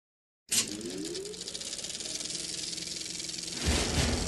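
Videotape audio cutting in with a click out of dead silence, then steady tape hiss with faint tones gliding upward. A louder, fuller sound starts shortly before the end.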